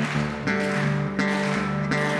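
Solo resonator guitar fingerpicked with a thumbpick in a slow blues: a steady low bass note rings under treble notes picked about two or three times a second.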